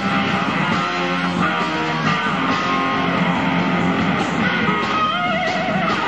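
Live blues-rock band playing, electric guitar to the fore over bass, with a wavering held note near the end.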